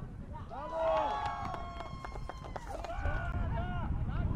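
Footballers shouting and calling to one another across the pitch during play, several voices overlapping, loudest about a second in and again near the three-second mark, with a few sharp knocks in between. Wind rumbles on the microphone throughout.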